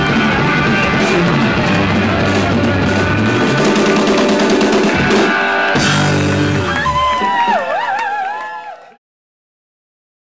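Live rock band playing the loud final bars of a song with electric guitars and drums. About six seconds in the band hits a last crash, leaving a few bending, wavering tones that fade, and the sound cuts off abruptly about nine seconds in.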